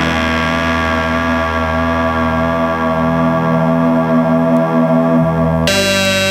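Electronic music: one sustained synthesizer chord held for about five and a half seconds, then a change to new chords near the end.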